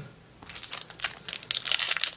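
Foil wrapper of a Yu-Gi-Oh! Magic Ruler booster pack crinkling as it is handled and opened, a dense run of irregular crackles starting about half a second in.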